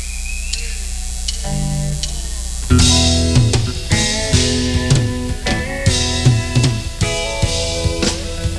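A live country band starting a song's instrumental intro: over a steady electrical hum a short low note sounds, then about three seconds in the drum kit, electric guitar and bass come in together at a steady beat.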